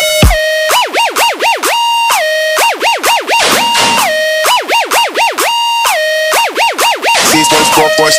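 Dubstep remix in a breakdown: a siren-like synth swoops rapidly up and down in pitch over sparse backing, with the bass largely dropped out. The full low-end beat comes back near the end.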